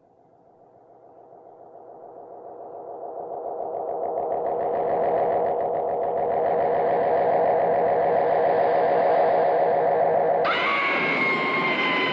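An eerie, pulsing electronic drone, heavy with echo, swells up from silence into a loud wavering mass. Near the end a long, high, sustained cry cuts in suddenly over it.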